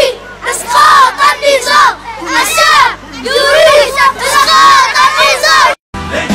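A group of children shouting together in repeated bursts about a second apart, high-pitched and loud. The sound cuts off abruptly just before the end.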